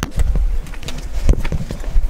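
Low rumbling noise on a handheld phone's microphone as it is carried along, with a few sharp knocks: one at the start, one just past the middle and one at the end.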